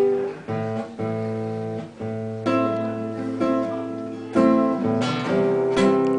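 Nylon-string classical guitar strumming chords, each struck chord left to ring before the next, as the song's opening begins.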